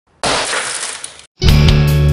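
A car side window shattering under an emergency glass-break tool: a sudden crash of breaking glass lasting about a second that cuts off abruptly. About a second and a half in, intro music with a steady bass begins.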